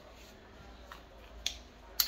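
Quiet room tone broken by a few small, sharp clicks, the loudest near the end, from a yellow-and-black power tool and its metal-hubbed head being picked up and handled.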